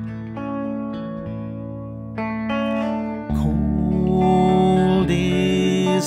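Instrumental break in a folk song: hollow-body electric guitar chords ringing and changing every second or two, growing louder a little past the halfway point.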